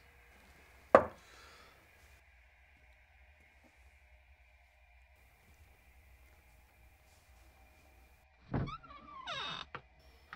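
A single sharp thunk about a second in, then quiet room tone with a faint steady hum. Near the end comes a short cluster of sounds that includes a brief rising-and-falling tone.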